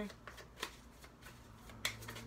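Tarot cards being handled and shuffled: a few soft card clicks, the sharpest one near the end.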